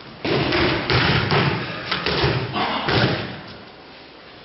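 Aikido practitioners' bodies thudding onto padded dojo mats as they are thrown and take breakfalls: several thuds and slaps in quick succession over about three seconds.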